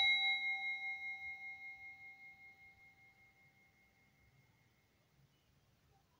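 Hammered brass singing bowl ringing after a strike with a wooden mallet, a clear tone with several higher overtones that wavers in loudness as it fades away over about three seconds.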